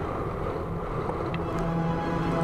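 Background music in a quieter stretch of sustained, held tones.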